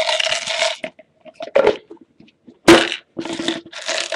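Hands handling a plastic LEGO set container: scraping and rustling plastic in short bursts, with one sharp plastic click or snap a little past halfway.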